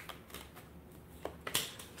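Tarot cards being handled and turned over on a table: a few faint, soft clicks and rustles, the sharpest about three-quarters of the way through.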